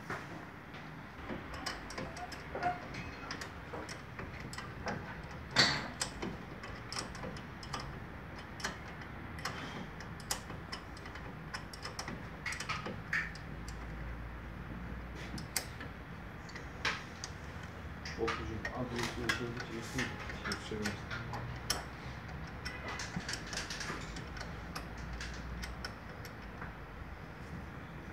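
Irregular metallic clicks and knocks from hand work on a car's front disc brake while the pads are being changed, with one sharper knock about five and a half seconds in.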